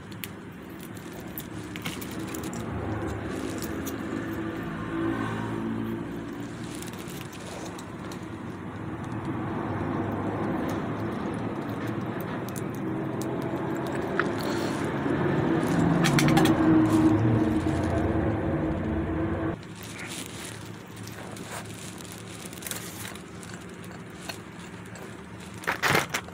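Close-miked handling of fast-food packaging: a ketchup sachet snipped with scissors, then food picked up, giving scattered clicks and crinkles. Under them runs a louder hum with shifting low tones that swells to a peak and then cuts off abruptly about three-quarters of the way through.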